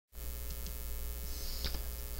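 Steady low electrical mains hum picked up by the recording microphone, with a couple of faint ticks about half a second in.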